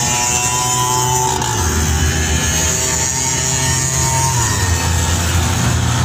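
Two-stroke Vespa auto-rickshaw engine running hard at speed. Its note drops about a second and a half in and rises again a little after four seconds.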